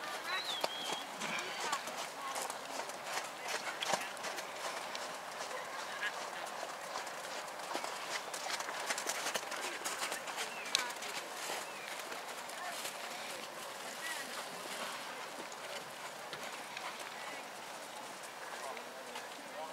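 A horse's hoofbeats in soft sand arena footing, with indistinct voices in the background.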